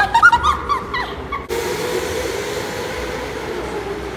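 Laughter, then go-karts running on an indoor track: a steady hum with a faint whine under it, from about a second and a half in.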